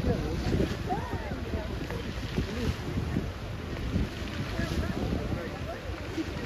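Wind rumbling on the microphone over the rushing of illuminated fountain jets, with the chatter of people nearby.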